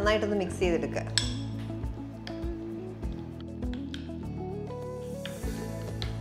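Background music with a few sharp clinks of a spoon against a dish, the loudest about a second in.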